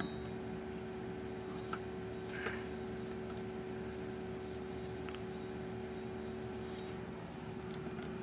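Steady electrical hum of several level tones from bench electronics, with a few faint clicks from test leads and probes being handled.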